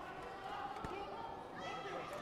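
Indistinct voices in a sports hall, with one short dull thud a little before the middle.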